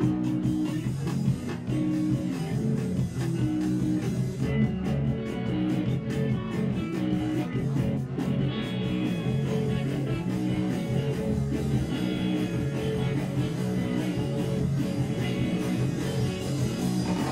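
Rock band playing live, electric guitars and bass over drums, in an instrumental stretch with no singing.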